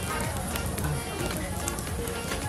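Busy restaurant background: many voices chattering at once under background music, with scattered small clicks.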